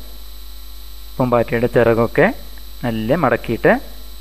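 Two short phrases of spoken narration over a steady electrical mains hum that runs under the whole recording.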